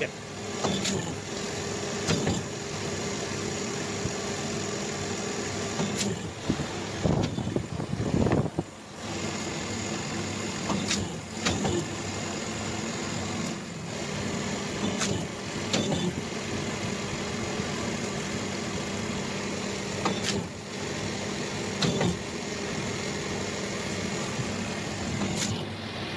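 Hydraulic paper plate making machine running with a steady motor and pump hum. Sharp clicks come every few seconds as the die press cycles. A louder burst of handling noise comes about seven to nine seconds in.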